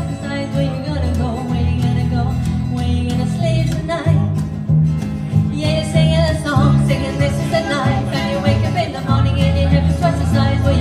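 Small live band playing an instrumental passage of the song between sung lines: a steady low bass part under a wavering melody line.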